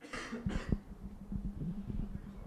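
Handheld microphone cutting in and being handled. A short burst of breathy noise, then a steady low hum with a string of small knocks from fingers on the mic body.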